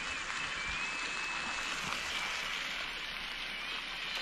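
Denver steaks frying in butter in a pan on a gas canister camping stove, a steady sizzling hiss.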